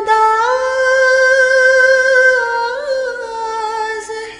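A woman singing an Urdu ghazal unaccompanied, holding one long note that rises slightly about half a second in and wavers briefly near the end.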